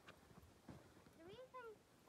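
Very quiet: a few soft footsteps on snow, then, a little over a second in, a short faint vocal sound that rises and then falls in pitch.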